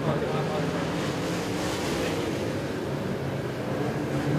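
Dirt-track modified race cars' engines running hard as a pack of cars races around the track: a steady, dense engine drone.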